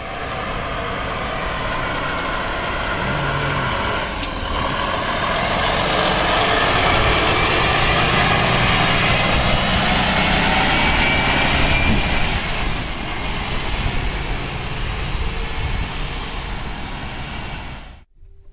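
Volvo FH16 750 truck's 16-litre straight-six diesel running as the truck and trailer drive past close by, growing louder through the middle and fading toward the end.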